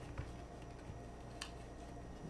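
Faint handling noise as a plastic football helmet visor is worked out of its soft cloth bag, with two small clicks, one just after the start and one about a second and a half in, over quiet room tone.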